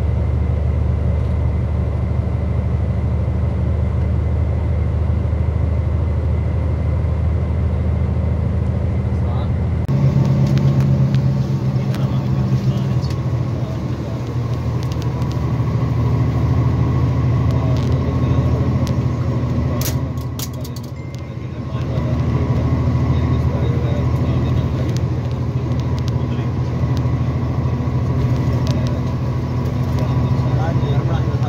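Steady engine and road drone of a moving vehicle heard from inside the cabin on a highway, with an abrupt change in tone about a third of the way through and a brief dip in loudness around two-thirds of the way through.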